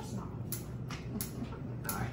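A few soft clicks and handling knocks over a low steady hum, with faint talk in the background.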